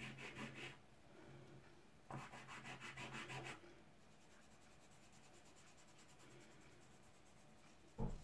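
Fingertips rubbing soft pastel pigment into paper, blending two colours together: quick, faint back-and-forth scratchy strokes in two spells, a short one at the start and a longer one from about two to three and a half seconds in, then only faint rubbing.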